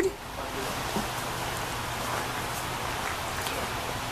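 A steady, even hiss with a faint low hum beneath it.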